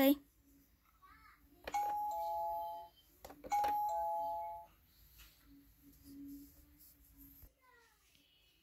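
Electronic doorbell of a Fisher-Price toy house pressed twice, a little under two seconds apart. Each press gives a click and a two-note ding-dong chime stepping down in pitch.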